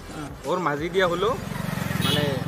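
Motorcycle engine running as the bike passes close by, with a steady pulsing drone from about halfway through.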